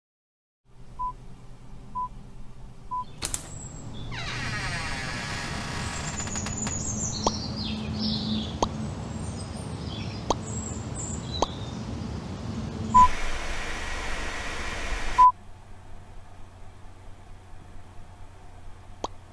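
Electronic intro sound design: three short steady beeps a second apart over a low hum, then a swelling hiss with sweeping whooshes, high chirps and a few sharp clicks. Two more beeps follow, and the hiss cuts off suddenly, leaving the low hum.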